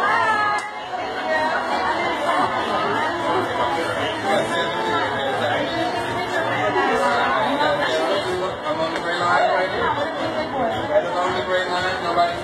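Several people talking at once: indistinct chatter with no clear words.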